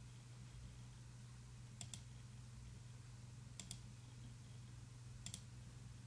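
Near silence over a low steady hum, broken by three faint double clicks of a computer mouse, spaced about two seconds apart, as the audio player is started.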